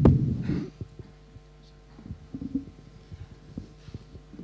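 Low thumps and rumbles close to the lectern microphone, loudest in the first second, with a few softer knocks later, over a steady hum from the sound system.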